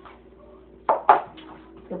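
A dog's food bowl set down on a tile floor at feeding time: two sharp clattering knocks in quick succession about a second in.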